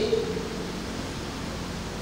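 Steady background hiss of room noise picked up by the microphone, with the tail of a man's word fading out at the very start.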